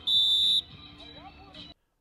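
A coach's whistle blown in one short, loud blast of about half a second, followed by faint voices on the practice field before the sound cuts off near the end.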